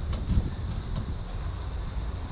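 Uneven low rumble of wind on the microphone and tyres rolling over a concrete path from a bicycle being ridden, with a couple of light knocks.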